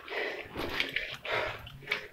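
A person breathing close to the microphone, a few short noisy breaths.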